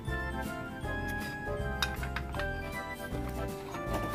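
Background music with held notes over a repeating bass line.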